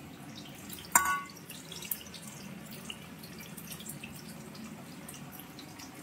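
Fried paneer cubes slid from a steel pan into a pot of hot water, dropping in with small watery plops. The pan clinks against the pot with a short metallic ring about a second in, and faint steady crackling follows.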